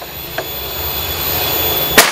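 A steady rushing noise grows louder over about two seconds and is cut off at the very end by the sharp crack of a shot from a Bocap FX Royale PCP air rifle.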